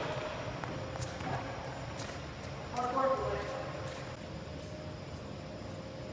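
Steady low room noise in a large air-supported sports dome, with a short, distant voice speaking about three seconds in and a few faint ticks.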